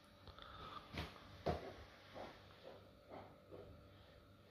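Quiet room with two faint, short knocks about a second in, followed by a few softer brief handling sounds.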